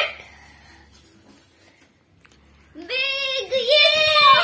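A child's long, loud, excited shout of celebration, starting about three seconds in and wavering in pitch, after a quiet pause.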